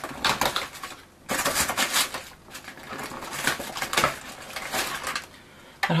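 Cardboard door of a jewellery advent calendar being pulled and torn open, then crackling cardboard and packaging being handled. The loudest burst of tearing comes about a second in and lasts about a second.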